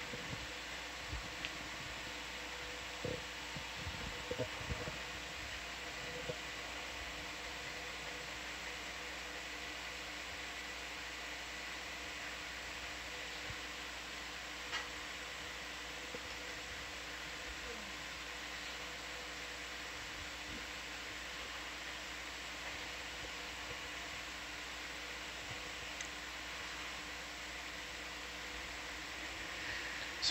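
Steady fan hiss and electrical hum of control-room equipment, with a few faint clicks in the first few seconds.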